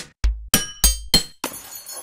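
An electronic drum-machine beat with deep kick thumps, joined by bright glassy clinks. About a second and a half in comes a glass-shattering sound effect, and its tinkling debris fades out.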